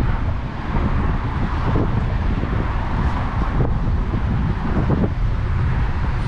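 Steady wind rushing and buffeting on a GoPro's microphone while riding a bicycle into a breeze.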